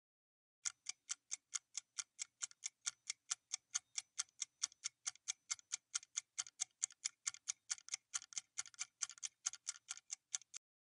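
Quiz countdown timer sound effect: a rapid, even clock-like ticking, about four and a half ticks a second, marking the seconds left to answer.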